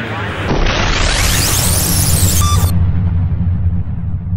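Logo-intro sound effect: a rising whoosh that climbs in pitch for about two seconds and cuts off sharply, over a deep sustained booming rumble.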